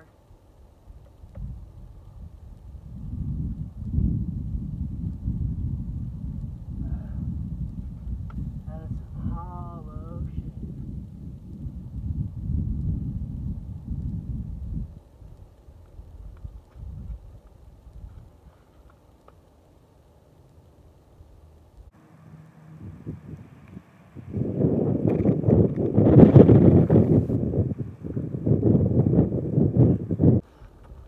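Wind buffeting the phone's microphone as low rumbling gusts: a long gust in the first half, a lull, then a louder gust over the last few seconds.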